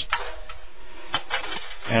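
Metal utensil clinking against a stainless steel skillet: a few sharp, separate clicks.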